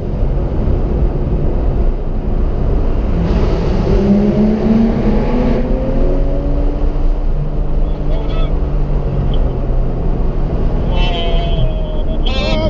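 A car driving at speed, with a heavy steady rumble of road and wind noise. The engine note rises slowly for a few seconds as the car accelerates. Faint voices come in near the end.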